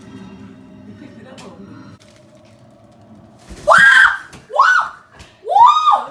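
A woman shrieking three times in quick succession in the second half, each cry rising and then falling in pitch, after a low murmur.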